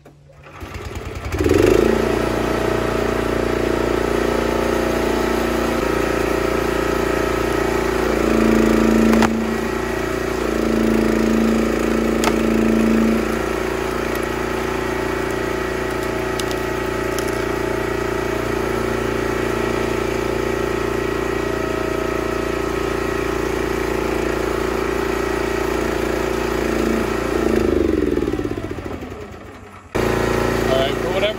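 Small gas engine driving a homemade hydraulic log splitter, starting about a second in and running steadily, with its note changing for a few seconds about a third of the way through. Near the end it winds down and stalls on its own in the middle of a split. The owner says it didn't used to do that and suspects the spark plug or a dirty carburettor.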